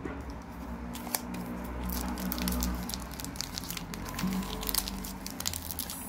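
Foil wrapper of a Pokémon booster pack crinkling as it is handled, with scattered sharp crackles, over a low steady rumble.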